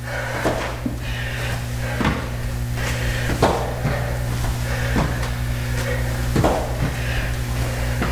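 A steady low hum, with irregular soft thumps and taps of shoes and knees landing on foam floor mats as two people step back into crossover lunges, about one every second.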